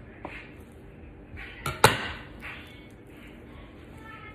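A metal bench scraper knocks sharply once against the countertop a little under two seconds in, with a short scrape just before it, while dividing sticky sourdough dough. There is soft handling noise of the dough and hands around it.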